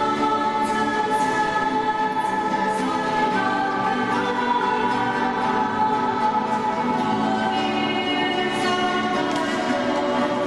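Many voices singing a worship song together in long held notes, accompanied by strummed acoustic guitars.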